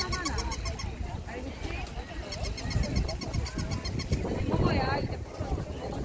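Chatter of several people talking at once, with one voice standing out near the end. A rapid high-pitched chirping, about ten chirps a second, runs for a second or two in the middle.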